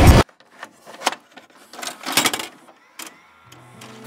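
Music cuts off suddenly, followed by a few short, scattered clicks and clattering sounds, the loudest a brief cluster about two seconds in. A low held note comes in near the end as the next piece of music begins.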